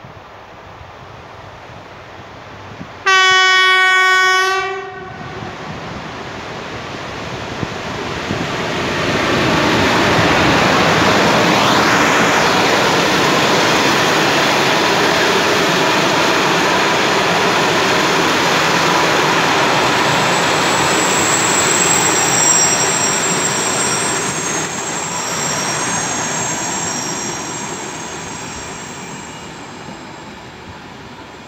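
PKP Intercity EP07 electric locomotive sounding its horn once, a single long note of nearly two seconds, about three seconds in. Then the passenger train passes close by: the rumble and clatter of the coaches' wheels on the rails builds up, stays loud, and fades near the end, with thin high squealing tones in the later part.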